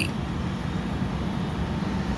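Steady low rumbling background noise, with no speech.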